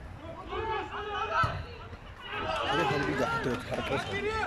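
Players calling and shouting to each other in play, with several voices overlapping and louder in the second half. A single sharp knock about a second and a half in.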